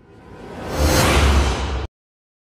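An edited-in whoosh sound effect with a deep rumble beneath it. It swells up over about a second, then cuts off suddenly just before the end.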